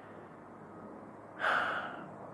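A man's short, audible breath through the mouth about one and a half seconds in, over faint room noise.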